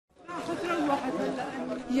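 Several people talking at once, their voices overlapping in a crowd's chatter.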